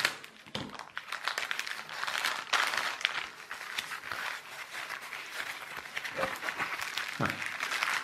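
Plastic packaging rustling and crinkling as it is unwrapped by hand, a steady run of small irregular crackles.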